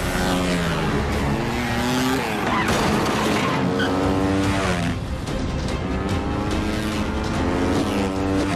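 Dirt bike engines revving hard, their pitch climbing and dropping again and again with the throttle, along with tyres skidding.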